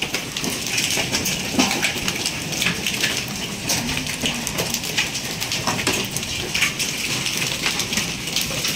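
Hailstorm: hail and rain pattering on hard surfaces, a dense steady hiss with frequent sharp ticks.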